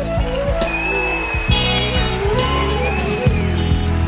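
A live band playing an instrumental passage with no singing: a steady bass under sustained held notes, and a high melodic line that arches up and down twice.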